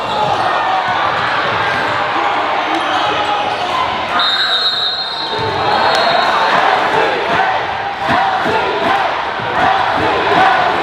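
Basketball bouncing on a hardwood gym floor amid the steady chatter of players and spectators in a large hall. About four seconds in, a high steady whistle sounds for about a second, a referee's whistle stopping play.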